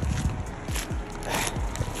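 Footsteps and handling rumble from a handheld camera carried on a walk, with a breathy sigh near the end.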